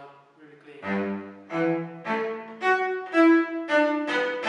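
Cello bowed in a run of separate notes, starting about a second in, each note about half a second long. The strings sit too deep in the bridge grooves, and the violinmaker finds the sound not really clean and the cello slow to respond.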